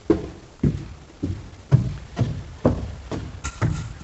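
Footsteps climbing bare wooden stairs, a steady pace of about two steps a second.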